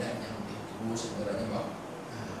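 A man speaking: lecture speech into a microphone, which the speech recogniser did not write down.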